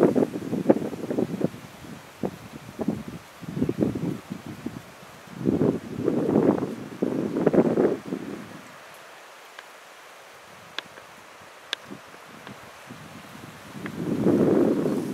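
Rustling with wind on the microphone, coming in uneven bursts for about the first eight seconds, then a quieter stretch with a few faint clicks.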